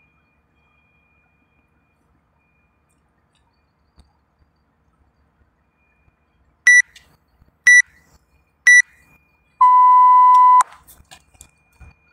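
Interval timer counting down the end of a rest period: three short, high beeps a second apart, then one longer, lower beep that marks the start of the work round.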